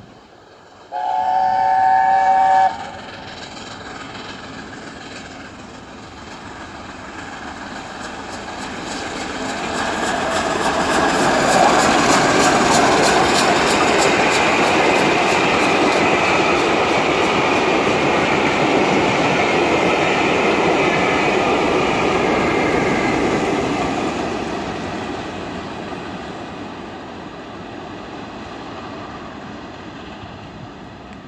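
LNER A4 Pacific steam locomotive 60009 Union of South Africa sounds its chime whistle once, about a second in, a blast of under two seconds. Then the locomotive and its train pass at speed without stopping. The rush of exhaust and the clatter of wheels over rail joints build to a loud peak around the middle, hold, and fade away near the end.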